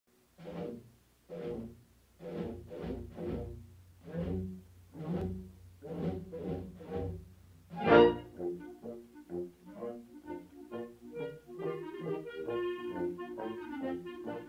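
Carousel band organ music. Slow, evenly spaced chords with a low bass under them, a loud hit about eight seconds in, then a quicker tune.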